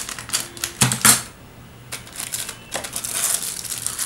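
Clear plastic packaging bags crinkling as they are handled, with small clicks and rattles of the kit parts inside them; the loudest burst of crackling comes about a second in.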